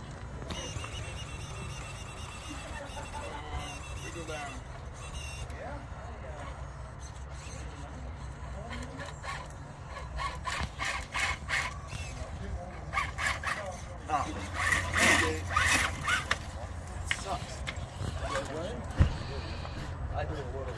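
A 1/10-scale electric RC rock crawler, a Vanquish-chassis Axial SCX10 II, creeping over rocks: a thin, high electric motor and gear whine. From about halfway through comes a run of clatter and crunching on stone, and faint voices sit in the background.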